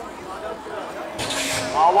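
BMX start gate dropping with a short pneumatic hiss about a second in, over a long steady start tone from the gate's signal.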